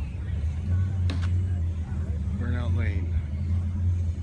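A vehicle engine idling with a steady low rumble, with a sharp click about a second in and a person's voice briefly around the middle.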